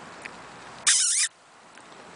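A dog lets out one short, loud, high-pitched squeal lasting about half a second, a little under a second in, while wrestling in play.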